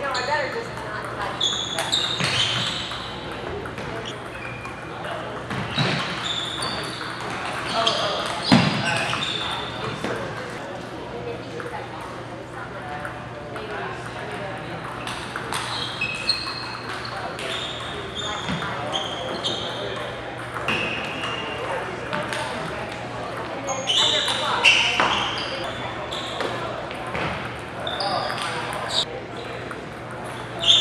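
Celluloid table tennis balls clicking off paddles and the table in quick rallies, with short high shoe squeaks on the wooden hall floor and voices chattering, all echoing in a large gym hall.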